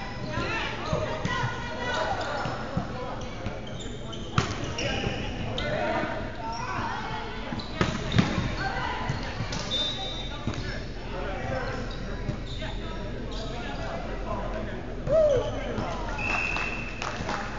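Indistinct chatter of many voices echoing in a large gymnasium, with the occasional thud of a ball on the hardwood floor, the sharpest about four and eight seconds in.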